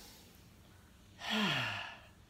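A woman's sigh a little over a second in: a breathy exhale whose voice falls in pitch, given as she sits up out of a child's pose stretch.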